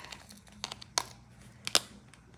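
Light, sharp plastic clicks and taps from diamond-painting work, the drill pen picking up and pressing resin drills onto the sticky canvas. There are about five clicks, in small clusters, with the loudest pair near the end.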